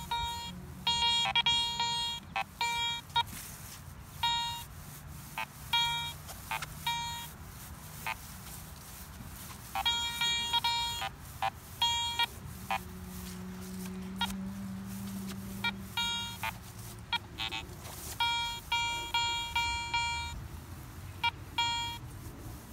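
Garrett Ace 400 metal detector beeping with each sweep of the coil over a deep buried target, its depth reading pegged at eight inches. The beeps come in bursts of quick repeated tones near the start, around the middle and near the end.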